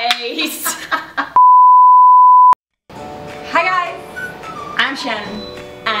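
An editor's censor bleep: a single steady high-pitched beep lasting about a second, replacing the original audio and cutting off suddenly. Laughter and talk come before it, music and speech after.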